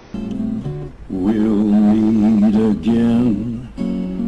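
Instrumental backing-track intro with guitar, starting at once. About a second in, a held melody line with a wavering, vibrato-like pitch comes in over the accompaniment, and a new phrase begins near the end.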